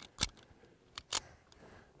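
Smith & Wesson 1911 E-Series .45 ACP pistol being reloaded by hand: sharp metallic clicks, one about a quarter second in, then a faint click and a louder one about a second later.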